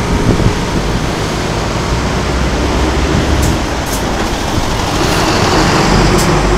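City road traffic passing an intersection: a steady rush of engine and tyre noise with a low rumble, a bus among the vehicles.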